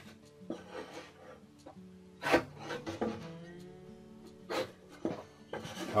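Pencil scratching on plywood and a wooden straightedge being slid and set down on the board, with sharper scrapes about two seconds in and again near the end, over faint background music.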